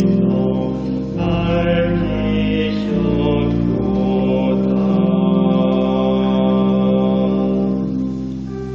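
Church organ playing slow, sustained chords over a deep bass, changing chord every second or two: the introduction to the sung responsorial psalm.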